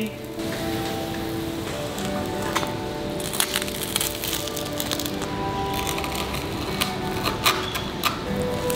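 Background music, with a chef's knife crunching through the charred crust of a toasted sourdough sandwich onto a wooden chopping board: a run of sharp crackles from a couple of seconds in.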